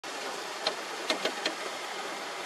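Paddlewheel aerator churning pond water in a steady rush, with four short, sharp sounds in the second half-second to second and a half.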